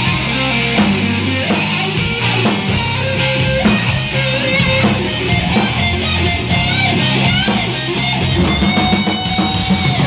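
Live psychedelic rock band playing: an electric guitar lead with bent, wavering notes over electric bass and a drum kit.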